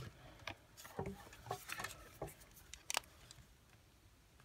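Faint handling clicks and rustles: the small plastic display housing and alligator-clip test leads being picked up and moved about, with a sharper click a little before the end.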